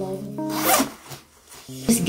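Zipper of a puffer jacket pulled open in one quick rasp, about half a second in.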